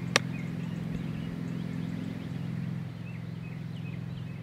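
A golf club striking the ball on a short chip shot: one sharp click just after the start. Faint bird chirps sound over a steady low hum.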